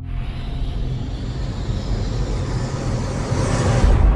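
Cinematic logo sound effect: a low rumbling whoosh over a deep drone that swells and brightens over a few seconds, building to a heavy boom near the end.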